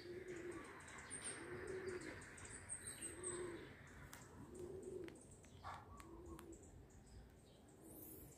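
A dove cooing faintly, a soft low note repeated about every second and a half, with a small bird's thin high chirps over the first few seconds.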